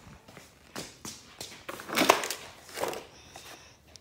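Handling noise of a phone rubbing against clothing as it is carried, with a run of knocks and scrapes, the loudest about two seconds in.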